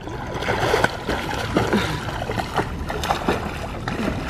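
Steady splashing of pool water from a child swimming, kicking and stroking.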